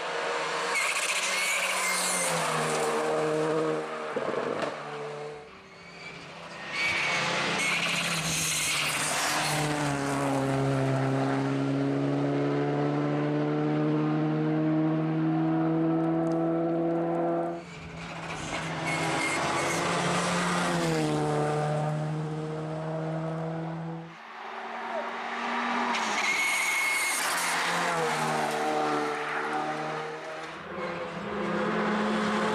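Rally car, a Škoda Fabia R5, driven hard through corners: the engine note climbs and drops with each gear change and lift-off, holding one long pull in the middle. The sound breaks off abruptly three times as one pass gives way to the next.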